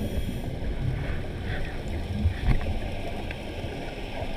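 Muffled, uneven low rumble of water moving around an underwater camera housing as the camera is carried through the water, with a couple of faint clicks.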